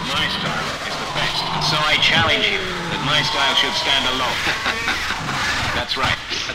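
Hardtek mix in a passage of sampled sounds: wavering, swooping pitch glides layered with a voice-like sample.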